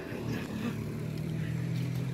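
Motorcycle engine running on the street, a low steady hum that rises slightly in pitch in the second half.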